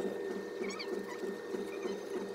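Sharpie marker drawing on a cardboard toilet paper roll: a low, even scratching with a few short squeaks near the middle.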